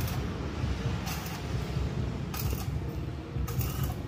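Electric arc welding on steel truck-body panels: a continuous crackling arc, with a hissing surge about once a second.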